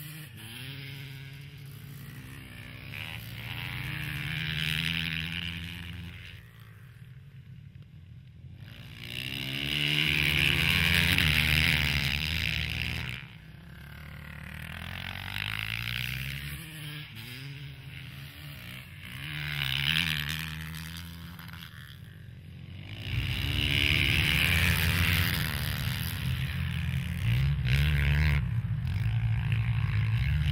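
Ice-racing dirt bikes passing by several times, their engines revving up and down through the gears. The bikes come and go in swells, loudest over the last several seconds.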